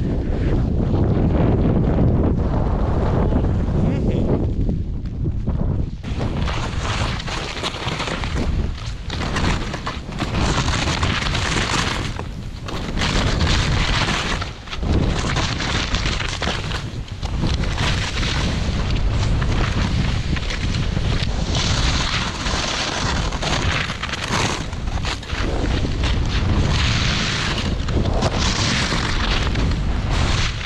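Strong wind buffeting an action camera's microphone as a snowboard rides downhill; from about six seconds in, the hiss and scrape of the board over crusty, icy snow joins the low wind rumble, broken by brief lulls.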